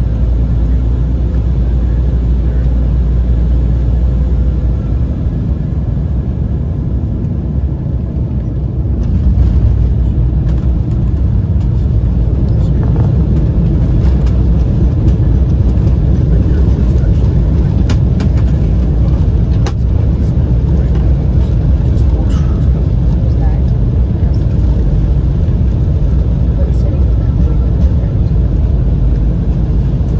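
Cabin noise of an Embraer 195 landing: a loud, steady rumble of its GE CF34 turbofans and airflow, which steps up about nine seconds in as the jet touches down and slows on the runway, with scattered knocks and rattles as it rolls out.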